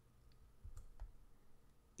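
Near silence: quiet room tone with a few faint clicks a little before and around one second in.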